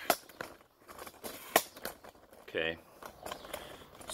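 Clicks and snaps of a camera tripod's leg locks and sections as the legs are shortened: two sharp snaps about a second and a half apart, among lighter clicks.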